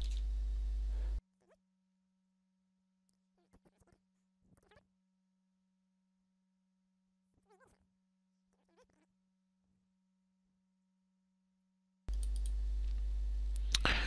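Mostly near silence with a faint steady tone and a few faint clicks. A steady low recording hum is heard in the first second and again for the last two seconds.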